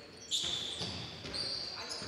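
Basketball game sound on a hardwood gym floor: a ball being dribbled and shoes squeaking in short high tones, with faint voices from the players and bench.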